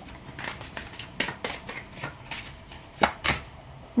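Tarot cards shuffled by hand: a run of soft, irregular card clicks, with two louder snaps about three seconds in as a card is drawn and laid down.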